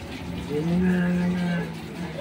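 An elderly man's voice holding one long wordless sound, a drawn-out hesitant 'ehh', for about a second before he answers a question.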